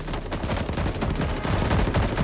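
Sustained automatic rifle fire from several guns at once, the shots coming so fast they overlap into one continuous rattle.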